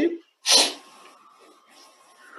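A person's short, sharp burst of breath noise about half a second in, hissy and quickly fading, like a sneeze.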